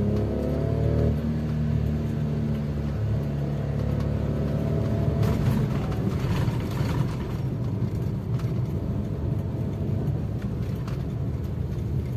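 Car engine and road noise heard from inside the cabin while driving: the engine's hum rises in pitch during the first second as the car accelerates, then settles into a steady low drone over a continuous tyre rumble. A louder rushing sound comes and goes around the middle.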